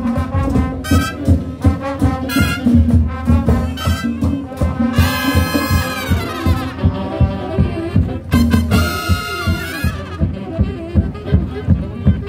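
Marching band playing live: brass (trumpets, trombones, saxophones, sousaphone) over a steady drum beat. Loud brass swells come about five seconds in and again near nine seconds, each sliding down in pitch.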